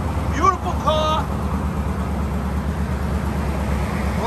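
1969 Chevrolet Camaro's factory V8 idling steadily, a low, even exhaust note.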